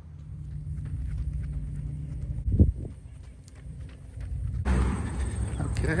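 A low steady rumble, then, about two-thirds of the way in, a runner's rhythmic footfalls in Atreyu Race Model running shoes on an asphalt road start suddenly and grow louder.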